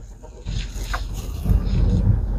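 Jeep Commander rolling slowly over a gravel lot as it pulls in to park, heard from inside the cabin: a low rumble of tyres and engine that grows louder in the second half.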